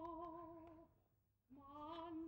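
An operatic soprano holds a sung note with wide vibrato and breaks off a little under a second in. After a short near-silent pause she begins a new phrase about a second and a half in.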